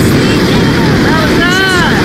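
Wind buffeting the camera microphone under an open parachute canopy: a loud, steady rumble. Near the end a person lets out a short whoop that rises and falls in pitch.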